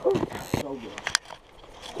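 A voice briefly at the start, then a few sharp clicks and scraping handling noise.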